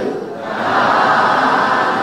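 Many voices chanting together in unison in long phrases, with a brief dip between phrases.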